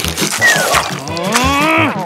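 A cartoon character's long, drawn-out moan that rises and then falls in pitch, over background music with a steady beat. A short falling whistle-like tone comes about half a second in.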